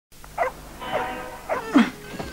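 A dog whining and yelping: a short call, a longer held whine, then two quick falling yelps.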